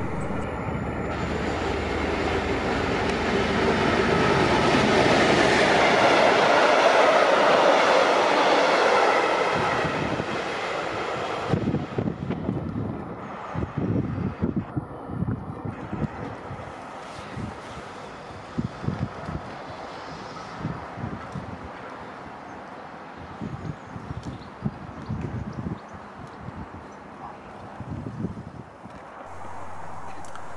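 Diesel locomotive hauling a short train through a station: the engine and wheel noise builds to a peak about seven seconds in, then fades by about twelve seconds as the train recedes. It leaves a quieter stretch broken by irregular knocks and clicks.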